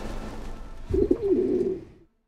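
A pigeon cooing: a short call about a second in, then a longer wavering coo that cuts off sharply near the end. The tail of string music fades out before it.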